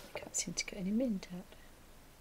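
A woman murmuring a brief phrase under her breath, too quiet to make out, lasting about a second and a half.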